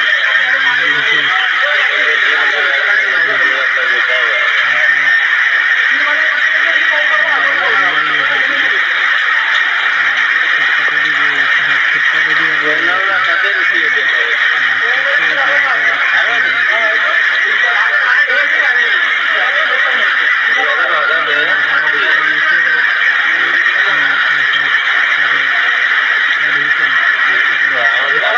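Heavy rain pouring steadily onto a flooded street and an overhead awning, a continuous loud hiss, with people's voices talking intermittently underneath.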